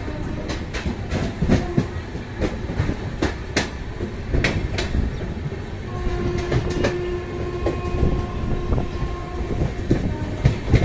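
A moving passenger train heard from its open doorway: a steady rumble of wheels on rails with irregular sharp clicks. A steady tone sounds for about three seconds starting about six seconds in.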